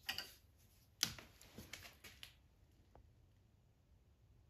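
Light handling clicks and taps as hands move a small pen blank at the sander table: a sharper click about a second in, a few small ones after it, and a last faint tick later.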